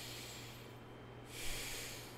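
A man breathing audibly between sentences: two airy breaths, the first fading in the opening half second, the second stronger with a short sharp catch about a second and a half in.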